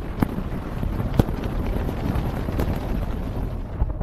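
Sound-designed storm ambience for an alien atmosphere: a steady low wind-like rumble with a few sharp clicks scattered through it, the strongest about a second in.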